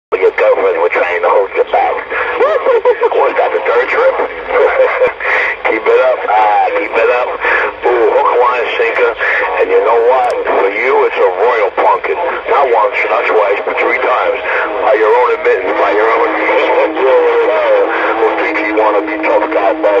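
Radio chatter from other stations coming through a Magnum S-9 radio's speaker: thin, band-limited voices talking over one another, too garbled to make out. A steady low whistle joins in about three-quarters of the way through.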